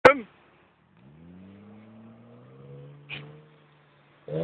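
A short sharp sound at the very start, then a BMW 320i's engine, faint, rising in revs and holding steady for a couple of seconds, with a brief hiss about three seconds in.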